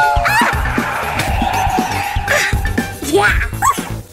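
Cartoon soundtrack: music with several short, rising yelp-like character vocalisations and a rushing noise in the middle, dropping off sharply at the end.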